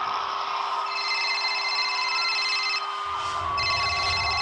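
An electronic telephone ringing with a fast trilling warble, two rings with a short break about three seconds in, over a steady low hum.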